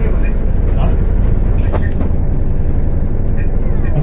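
Moving tour bus, heard from inside the cabin: a steady low engine and road rumble.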